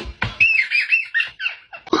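A toddler's high-pitched squeals: a run of short, wavering squeaks starting about half a second in and fading out just before the end.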